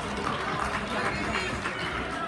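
Spectators in a gym talking and calling out, many voices overlapping at a steady level.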